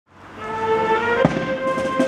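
Band music fading in: sustained wind-instrument chords with one drum stroke a little past halfway.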